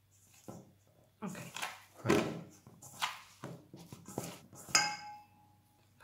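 Hands kneading soft pastry dough in a stainless steel bowl with extra flour: irregular knocks and rubbing against the bowl, which rings briefly near the end.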